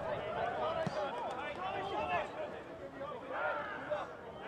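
Faint ambient sound at a football match: several voices of players and spectators overlapping, some calling out.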